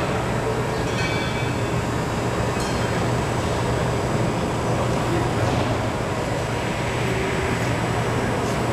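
Automatic tray-forming packaging machine running: a steady low hum under dense, even mechanical noise, with a few faint brief clicks or hisses.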